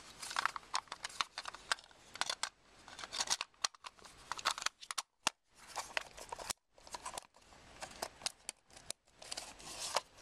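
Plastic housing of a Utilitech 24-hour light timer being handled and its top cover pressed back into place: an irregular run of small plastic clicks and scrapes.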